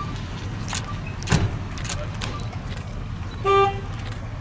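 Steady low rumble of outdoor traffic with a few sharp clicks and knocks, and near the end a single short car horn toot, the loudest sound here.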